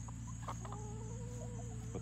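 Chickens clucking: a few short clucks about half a second in, then one drawn-out call lasting over a second.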